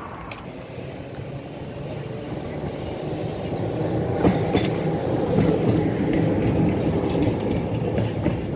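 Tram running along its rails past the microphone. The rumble of wheels on track builds from about three seconds in and is loudest in the second half, with a couple of sharp clacks about four seconds in.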